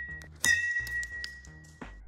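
A baseball bat hitting a small metal object (the cheap spider capo): a sharp metallic strike about half a second in that rings with a clear high tone for over a second, after the fading ring of a previous hit. Background music plays underneath.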